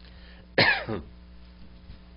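A man coughing once, sharply, about half a second in.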